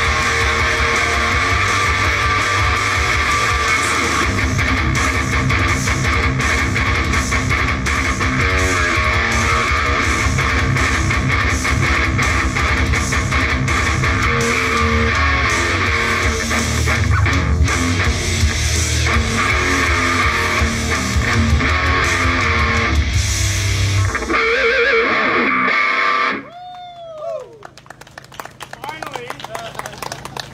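Live band of amplified electric guitars playing a heavy, distorted rock song. Near the end the low end drops away, the band stops, and a last ringing note slides down in pitch.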